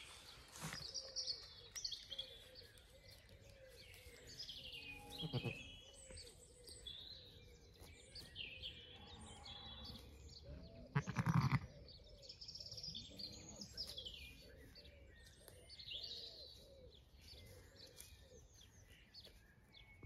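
A Zwartbles sheep bleats, once briefly about five seconds in and again more loudly about eleven seconds in, while small birds chirp throughout.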